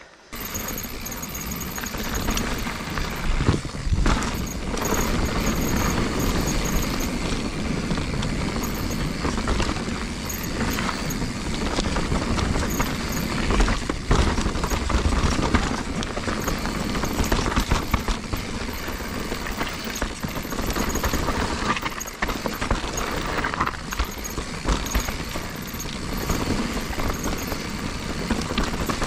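2021 Giant Reign full-suspension mountain bike ridden downhill on a dirt and gravel trail: a steady rush of tyres on dirt, with frequent knocks and rattles as the bike runs over roots and rocks, and wind buffeting the microphone.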